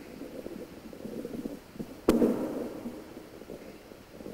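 One sharp thump about two seconds in, ringing out briefly in a large reverberant church, over a low background of shuffling and rustling.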